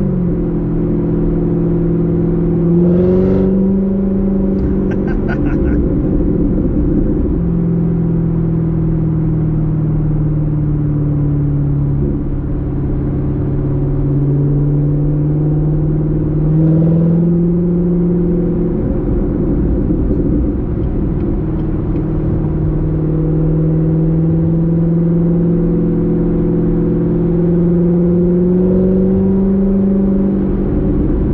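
Supercharged 6.2-litre V8 of a 2019 Corvette ZR1 heard from inside the cabin while driving: the engine note rises slowly under light throttle and drops back several times with gear changes and lifts. A short run of rapid ticks comes about five seconds in.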